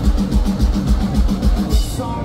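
Live metalcore band playing loud through a festival PA, with heavy kick drum and cymbals driving a fast beat and a cymbal crash near the end.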